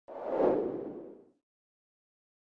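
A single whoosh sound effect for an animated channel logo, swelling up quickly and fading away within about a second and a half.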